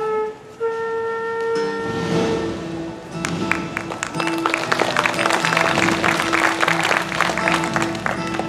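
A flute plays a slow melody of long held notes, ending about two and a half seconds in. Then a bluegrass-style acoustic band comes in with busy picked and strummed chords from acoustic guitar and mandolin over upright bass.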